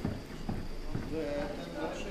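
Three sharp knocks about half a second apart, then a person's voice holding a tone near the end.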